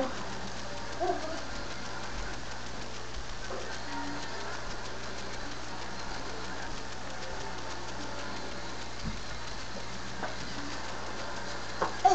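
Steady low hum and hiss of background room noise with no one near the microphone, broken by faint distant voices about a second in and again around four seconds in.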